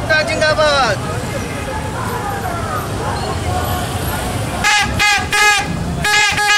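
Handheld plastic toy trumpets blown in short, repeated blasts, starting near the end, over a marching crowd's shouting and chatter. A loud shout rises and falls in the first second.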